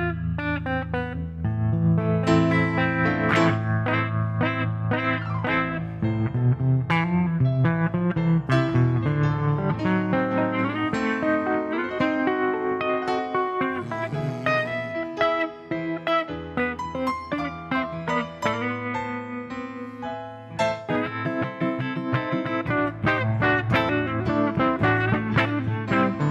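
Guitar and electric keyboard playing an instrumental song intro together, with busy picked guitar notes over held low keyboard chords and no vocals.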